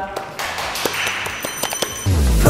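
A few sharp hand claps and taps, followed near the end by a short high chiming transition sound effect.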